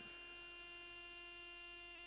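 Faint, steady electrical hum and buzz from the microphone and sound system, holding an even pitch throughout.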